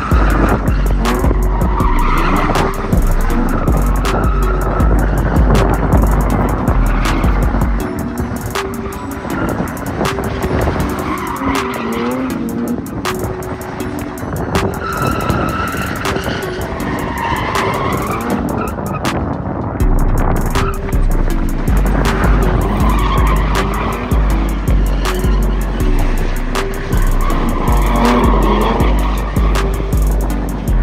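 Two BMW drift cars, an E46 and an E36, sliding in tandem: engines revving and tyres squealing in repeated bursts through the corner. Background music with a heavy bass line runs under it and drops out for a stretch in the middle.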